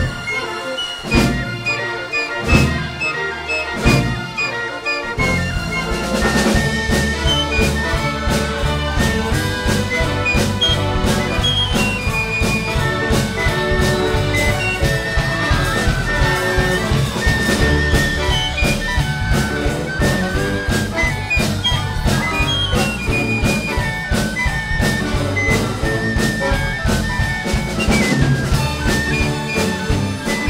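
Jazz-flavoured ensemble music: a few spaced drum hits open it, then about five seconds in the full band comes in with drum kit, strings and a trumpet carrying the melody.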